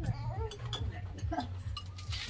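Quiet conversation among people at a meal, with light clinks of chopsticks against bowls.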